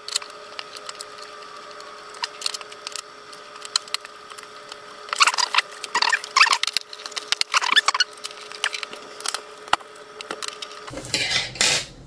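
Clicks, scrapes and rattles of plastic parts being handled and fitted as the Anycubic ACE Pro's cover is put back on. The handling is busiest around the middle, over a faint steady hum.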